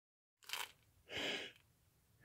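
Foil wrapper of a jumbo baseball card pack crinkling in two short, faint rustles as the pack is handled and stood upright.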